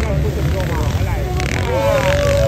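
Small quadcopter drone flying close overhead, its propellers whining in several tones that shift up and down in pitch as it manoeuvres, over a steady low rumble.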